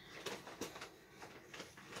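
Faint, intermittent crinkling of a plastic bag that a cat is playing with, a few soft crackles spread through the moment.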